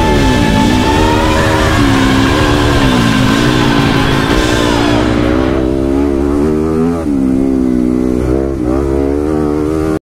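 Dirt bike engine revving up and down as the bike is ridden, pitch rising and falling with the throttle. Background music plays over it and fades out about halfway through.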